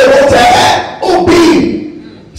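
A preacher's voice shouting, loud and held on a pitch, into a handheld microphone: two long chanted phrases, the second lower and falling, in the sung-out manner of an impassioned sermon.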